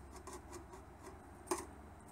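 Faint small clicks over a low steady hum, with one sharper click about one and a half seconds in.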